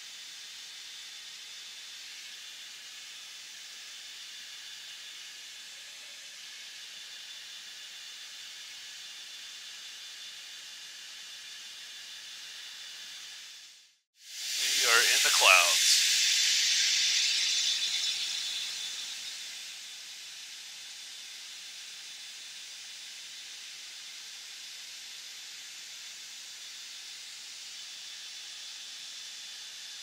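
Steady hiss of a fighter jet's cockpit intercom with a faint high whine in it. About halfway through, the audio drops out for a moment, then comes back as a much louder hiss with a brief squeaky, voice-like fragment, and fades back to the steady hiss over a few seconds.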